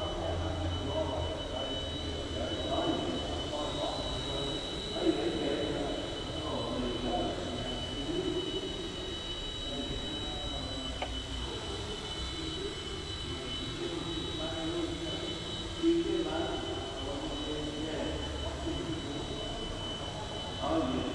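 Eachine E129 micro RC helicopter flying, its rotors and motors giving a steady high whine. Two short sharp knocks sound, one about a quarter of the way in and one about three quarters through.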